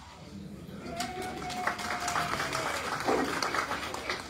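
Audience applauding, with voices mixed in. The clapping starts about a second in and dies away near the end.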